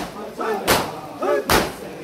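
Crowd of mourners doing matam, slapping their chests in unison: two sharp, loud strokes under a second apart. Between the strokes, voices chant a nauha.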